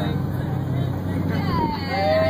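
A boat's engine drones steadily under people's voices. Near the end, a person lets out a long, high call that slides down in pitch.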